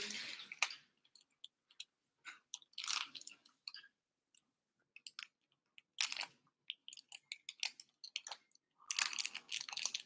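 Small clear plastic bag crinkling and rustling in a child's hands as she tries to open it, in short, irregular, faint crackles.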